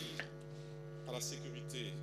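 Low, steady electrical mains hum from the lectern microphones' sound system.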